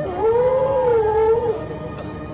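A single drawn-out howl lasting about a second and a half, rising at the start, then holding its pitch and sagging slightly before it stops.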